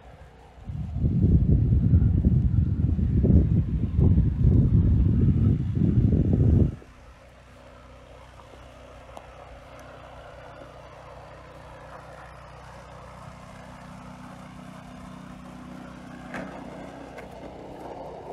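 Wind buffeting the microphone: a loud, fluctuating low rumble that starts about a second in and cuts off suddenly after about six seconds, leaving a faint steady low hum.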